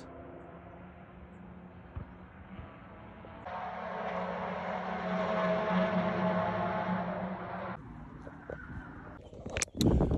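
Distant car engines running on the Silverstone motor-racing circuit: a steady drone that grows louder for about four seconds in the middle, then drops back.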